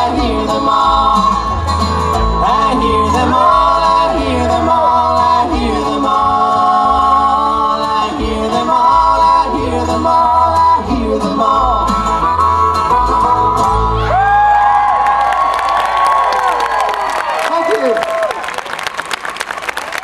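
Acoustic bluegrass string band with upright bass, guitar and banjo playing the close of a song under a held, bending lead melody. About fourteen seconds in the band stops, the last notes ring out and fade, and the crowd starts clapping.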